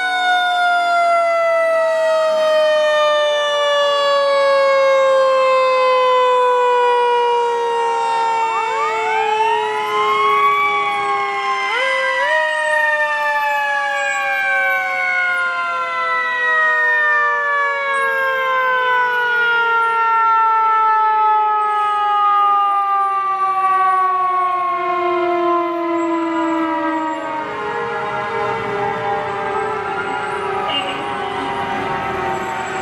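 Several fire-truck sirens sounding together, each winding up and then falling in a long, slow wail that drops in pitch over many seconds. New wind-ups come in about nine and twelve seconds in and again near the end.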